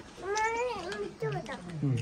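A high-pitched, meow-like call that rises and then falls, lasting under a second, followed by a lower voice.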